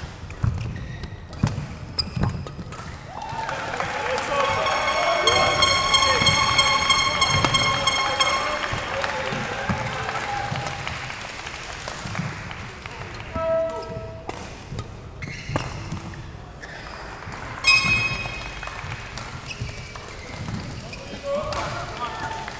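Badminton rally in a large sports hall: sharp pops of rackets hitting the shuttlecock, and shoes squeaking and thudding on the court. Through the middle, a louder stretch of voices and other sound from around the hall rises and fades.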